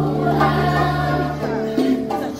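A group of girls singing in unison to acoustic guitar accompaniment, holding a long note that changes near the end.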